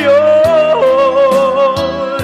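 Man singing one long held note with vibrato over a recorded backing track, the pitch stepping down once a little before a second in.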